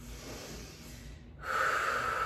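A woman breathing out audibly during a yoga movement: a faint breath at first, then about halfway through a louder, long breathy exhale.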